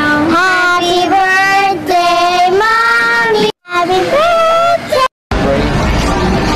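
A high, child-like voice singing a melody in long held notes, cut off by two brief dead-silent gaps at clip edits, about three and a half and five seconds in. After the second gap, noisy talk and room clatter take over.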